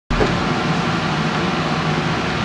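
Steady rushing noise with a faint low hum underneath.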